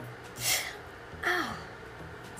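A person's sharp, hissing intake of breath, then about a second later a short pained cry that falls in pitch: a reaction to hot wax spilled on the hand.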